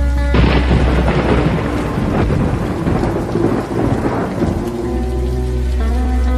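A thunderclap starts suddenly about half a second in and dies away over about four seconds. It is laid over slowed lofi music with a bed of rain, and the music's steady tones come back through near the end.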